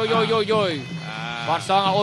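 A male commentator's excited voice, with long, wavering drawn-out calls whose pitch falls away, over a steady low background hum.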